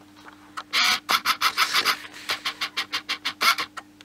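Plastic crinkling and rustling in quick, irregular crackles as something is handled, starting about half a second in and stopping shortly before the end.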